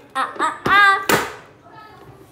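A young child's short high-pitched vocal sounds, then a sharp hand slap just after a second in.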